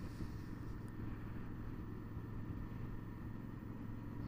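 Honda Varadero 1000 V-twin motorcycle running at a steady cruise, its engine drone mixed with wind and road noise.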